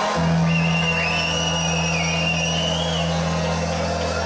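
Live ska band playing: held low notes underneath a high, wavering line that bends in pitch for about two seconds.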